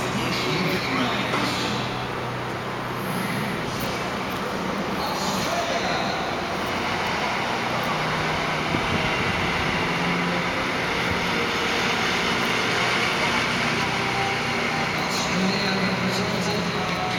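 Steady outdoor city background noise: a constant rumble of traffic with indistinct voices mixed in.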